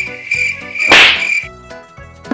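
A high, steady buzzing tone that breaks off briefly a few times, typical of an insect sound effect, with a loud noisy swoosh about a second in. The tone stops shortly after the swoosh.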